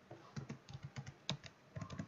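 Computer keyboard being typed on: a quick run of about eight faint key clicks as a word is typed.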